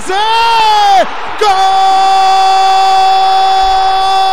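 A Brazilian Portuguese football commentator's goal call. A short yell comes first, then, about a second and a half in, one long held "gol" shout on a steady pitch.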